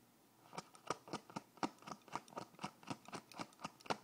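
A quick, even run of short, sharp taps, about five a second, starting about half a second in.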